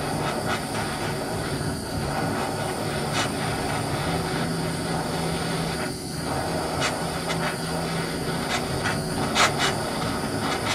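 Propane hand torch burning with a steady hissing flame while heating aluminum plates for brazing with aluminum rod. There are scattered short clicks, more of them in the second half.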